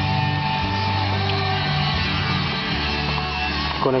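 Guitar music playing over the car's factory stereo, with steady held bass notes that change about once a second.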